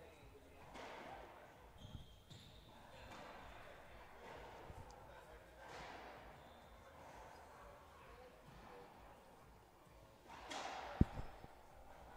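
Faint murmur of spectators' voices in an enclosed racquetball court, with a couple of soft thuds and, near the end, one sharp bounce of a racquetball on the hardwood floor as the server readies to serve.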